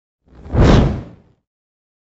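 A single whoosh transition sound effect for a news logo animation: one noisy swell that rises and dies away within about a second.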